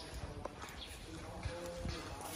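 Quiet outdoor background with a few faint, sharp knocks and faint distant voices.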